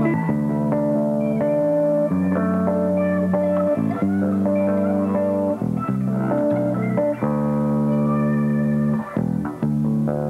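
An electric bass guitar played on its own: a line of held, sustained notes that change about every second, with short gaps just after nine seconds in.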